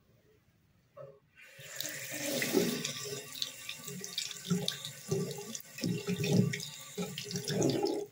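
Water running from a chrome bathroom sink tap into a ceramic basin, splashing over a hand and toothbrush being rinsed under the stream. The flow starts about a second and a half in and stops suddenly near the end as the tap is turned off.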